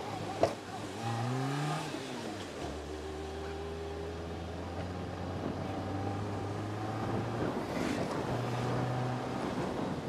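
Car engine heard close up from the bonnet while driving: the revs rise about a second in, drop as the gear changes, then hold steady. A sharp click comes just before the revs rise.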